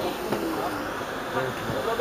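Open-air ambience of a football match on an artificial pitch: a steady hiss with faint distant players' shouts and a few soft thuds of the ball being kicked.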